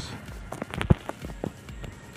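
A few light knocks and clicks, the loudest just under a second in.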